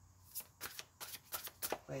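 A deck of tarot cards being shuffled by hand: a rapid, irregular run of about a dozen short card flicks, starting about half a second in.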